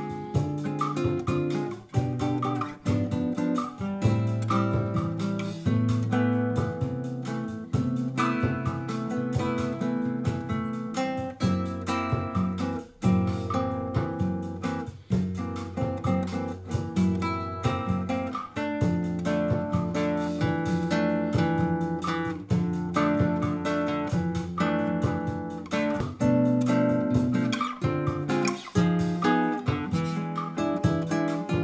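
Solo nylon-string classical guitar fingerpicked in a bossa nova style, playing chords in A minor with the melody on top.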